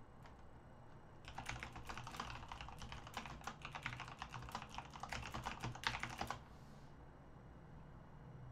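Typing on a computer keyboard: a quick run of key clicks that starts about a second in and stops after about five seconds.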